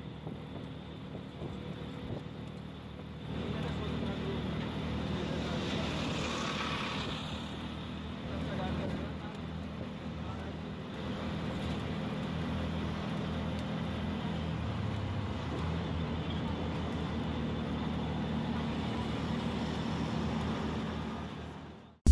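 An auto-rickshaw's engine running steadily, with road and wind noise, heard from inside the open cabin as it drives along.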